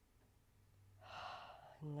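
A single deep, audible breath about a second in, lasting about half a second, over a quiet room with a faint low hum; a voice starts just after.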